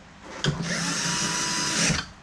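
Electric screwdriver running for about a second and a half, driving a screw into a TV's plastic back cover; it starts abruptly about half a second in and stops sharply near the end.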